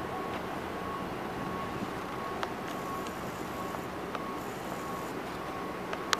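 Steady outdoor city street noise, like passing traffic, with a faint steady high tone that comes and goes and a few light clicks.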